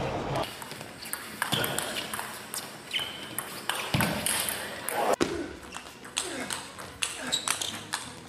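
Table tennis rallies: the ball is struck back and forth, making quick, uneven clicks off the bats and bouncing on the table.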